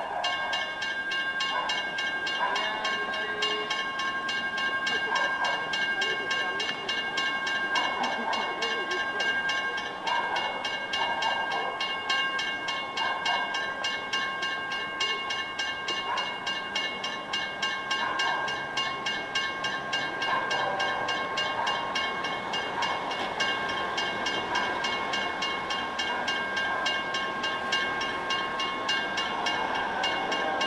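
Railway level-crossing warning bell ringing in rapid, even strokes: the crossing is closed with its barriers down for an approaching train.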